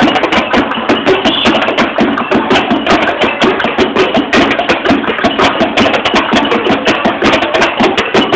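Makeshift hand percussion: a plastic paint bucket beaten as a drum along with other percussion, in a fast, steady rhythm of several strokes a second.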